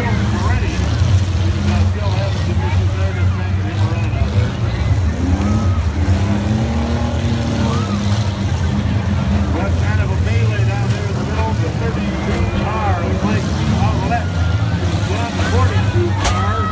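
Several small four-cylinder and V6 demolition derby cars' engines running loud and steady, with rises in pitch as they rev. Crowd chatter is over them.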